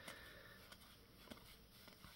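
Near silence: room tone, with one faint click a little over a second in.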